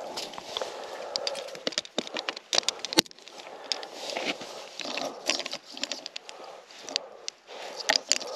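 Close handling noises of ice-fishing gear: scattered clicks, crackles and short scrapes as an ice skimmer is used at the hole and a plastic tip-up and its reel are set up, with one sharp click about three seconds in.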